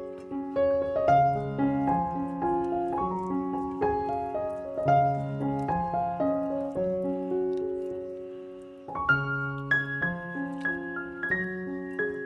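Background piano music: a calm melody of single notes over a repeating lower line, fading a little before a new phrase starts about nine seconds in.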